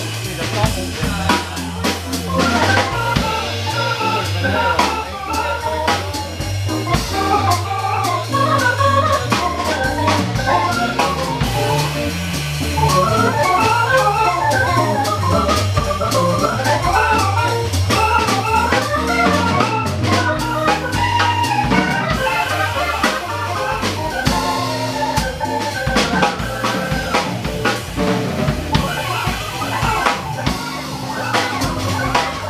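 Jazz organ trio playing live: a Nord organ with a Hammond-style tone carries quick runs of melody notes over a bass line moving in steady steps, with electric guitar and a drum kit keeping time on cymbals and snare.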